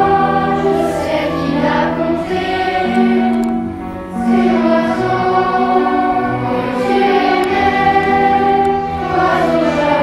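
Youth choir singing a slow French song with instrumental accompaniment, in long held phrases, with a short break between phrases about four seconds in.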